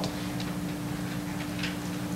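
A steady low electrical hum in the room, with a few faint, irregular clicks.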